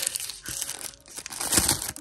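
Tissue paper crinkling as a small padlock is unwrapped from it, a run of irregular rustles that grows loudest near the end.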